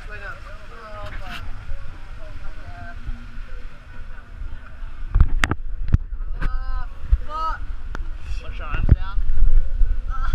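Several people's voices talking indistinctly at close range over a low wind rumble on the microphone, with a few sharp knocks about five to nine seconds in.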